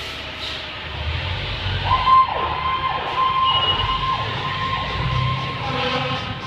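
Fire engine siren sounding as the truck pulls out, starting about two seconds in with a steady high tone broken by repeated falling sweeps, over the low rumble of the truck's engine.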